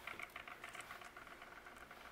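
Faint rustling and light tapping of die-cut cardstock petals being handled and pressed together by hand, a scatter of small paper clicks.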